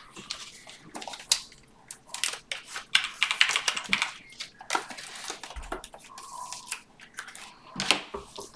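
Trading cards and their plastic and paper packaging handled on a tabletop: an irregular run of quick light clicks, taps and rustles.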